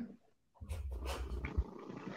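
A domestic cat purring close to the microphone, faint, starting about half a second in.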